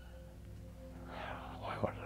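A man's soft breathing and a small mouth click during a pause in speech, over a steady low electrical hum.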